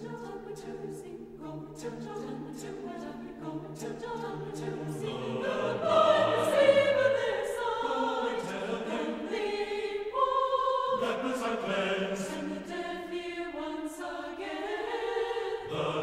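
A choir singing in several parts, without clearly heard accompaniment, swelling louder about six seconds in.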